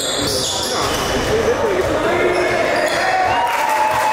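Sounds of an indoor basketball game: basketballs bouncing on a hardwood gym floor and sneakers squeaking, with indistinct voices of players and spectators carrying through the large, echoing hall. Several drawn-out squeaks come in the last second or so.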